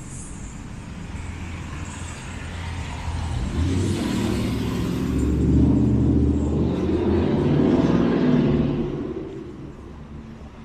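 A motor vehicle driving past on the street, its engine and tyre noise growing louder from about three seconds in, loudest for a few seconds, then fading near the end.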